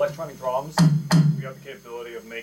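Two sharp strikes on an electronic drum kit pad, heard through the kit's amplifier, about a second in and less than half a second apart, each followed by a short low ring.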